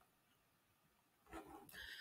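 Near silence, with a faint, short vocal sound, like an intake of breath or a murmur, in the last second.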